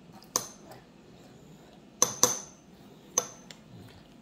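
Metal spoon clinking against a ceramic bowl as a child scoops food: a few sharp clinks with a brief ring, two of them close together about two seconds in.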